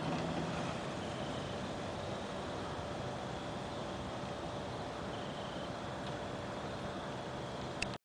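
Steady hum and hiss of the electrofishing boat's running engine on the water, with no distinct events, cutting off suddenly at the end.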